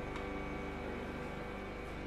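A quiet, steady background-music drone: sustained held tones with no beat and no change.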